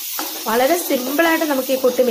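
Onions, green chillies and curry leaves frying in oil in a steel wok, with a steady sizzle. From about half a second in, a voice talks over it and is louder than the frying.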